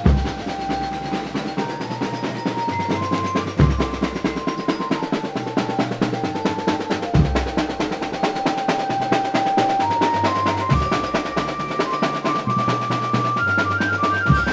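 A bendtong drum band playing: fast, dense snare-drum strokes under a melody of held notes that steps upward near the end, with a deep bass-drum boom about every three and a half seconds.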